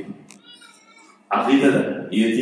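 A man preaching, breaking off for about a second and then speaking again. In the pause there is a faint, brief, high wavering call.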